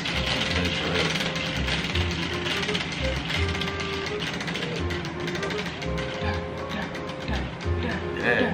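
Prize wheel spinning, its pointer flapper clicking rapidly against the pegs, the clicks spreading out as the wheel slows to a stop. Background music with a regular bass beat plays underneath.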